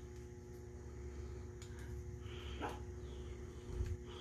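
Faint clicks and light handling noises of retaining-ring pliers and a cast-metal power steering pump body being picked up and worked, over a steady low background hum.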